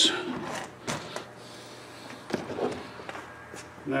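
Light clicks and knocks of a claw hammer and cable staples being picked up and handled, a few scattered small taps with quiet rustling between them.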